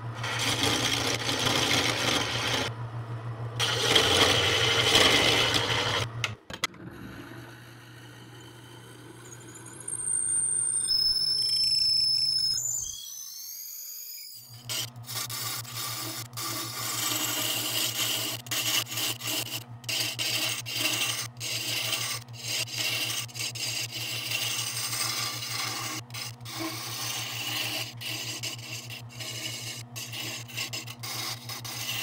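Wood lathe running with a steady motor hum while a hand-held turning chisel scrapes and cuts a spinning hardwood blank. The cutting stops about six seconds in and picks up again about halfway through, now with many short ticks from the tool on the wood.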